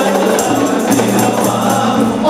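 Rebana klasik ensemble performing an Arabic qasidah: a group of male voices sings over a steady rhythm beaten on hand-held rebana frame drums, with a jingling, tambourine-like top.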